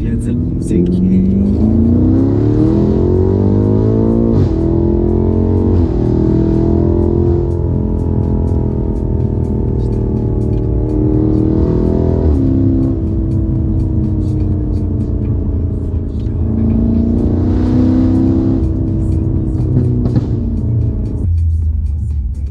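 Car engine heard from inside the cabin, pulling hard through the gears. Its pitch climbs, then drops sharply at upshifts about four and six seconds in and again about twelve seconds in, then climbs again later.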